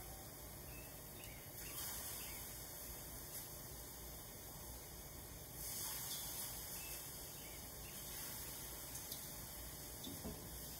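Bratwurst sizzling faintly as they are laid on the hot grates of a gas grill, with two brief louder hisses, about two seconds in and about six seconds in, as more links go down.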